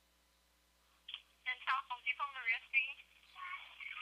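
Near silence for about a second, then a voice speaking over a telephone line, thin and narrow-sounding.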